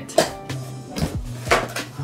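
A cardboard box being opened by hand: three or four sharp scraping and rustling sounds as the flaps are pulled apart, over background music.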